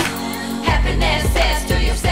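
Medium-tempo neo-soul hip-hop song with a deep bass line and women singing into microphones.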